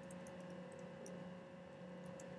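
Faint, irregular clicks of a computer keyboard being typed on, over a steady electrical hum.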